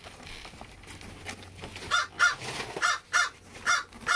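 A bird cawing: about six loud, harsh calls in quick succession over the second half.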